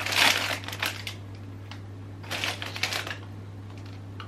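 A bag of potato chips crinkling as it is pulled open, loudest in the first second, with a second burst of crinkling about two and a half seconds in.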